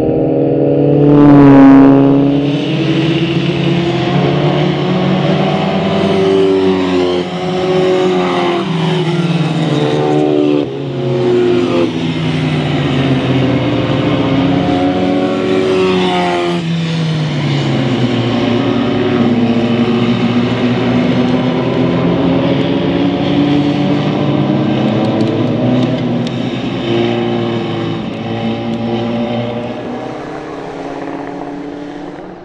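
Historic Formula Vee and Formula B single-seater race cars passing at racing speed. There is a loud pass about two seconds in, then several engines one after another, rising and falling in pitch as they go by, and the sound fades slightly near the end.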